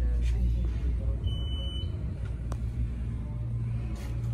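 AirTrain JFK car running with a steady low rumble as it pulls into a station. A single high beep lasting about half a second sounds about a second in, and a sharp click comes about two and a half seconds in.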